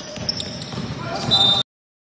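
Live sound of a basketball game on an indoor court: a ball bouncing, sneakers squeaking and players' voices. It cuts off suddenly about one and a half seconds in.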